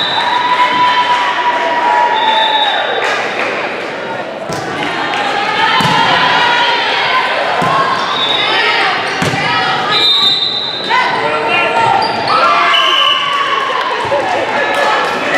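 Volleyball rally in a gymnasium: a few sharp slaps of the ball being hit, over players and spectators calling and shouting, all echoing in the large hall.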